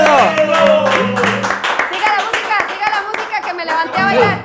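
Hands clapping in quick, irregular claps, over background music.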